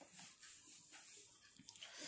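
Near silence: room tone with a few faint, soft sounds.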